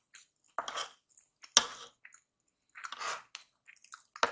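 Close-miked chewing of kimchi fried rice in separate bursts about once a second, with a sharp click about one and a half seconds in, as a wooden spoon and metal fork gather rice on a wooden plate.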